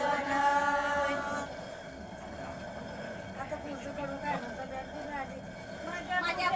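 Women singing a held line of an ovi grinding song together, breaking off after about a second and a half. Then the low rumble of a hand-turned stone quern (jate) grinding as they keep it turning, with faint voices.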